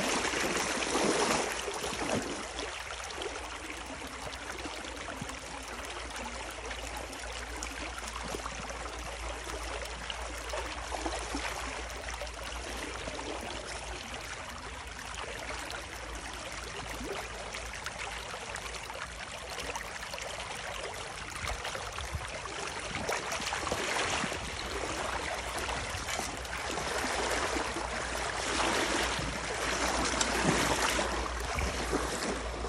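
Water rushing through a breach in a beaver dam, a steady flow through the gap, with louder splashing near the start and over the last several seconds as a wader-clad leg stands in the current.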